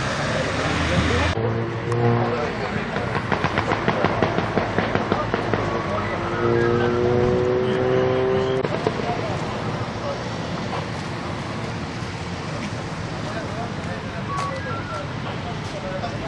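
Street ambience with indistinct voices of bystanders and vehicle noise. A quick run of clicks comes about three seconds in, and a steady held tone sounds for about two seconds from about six seconds in.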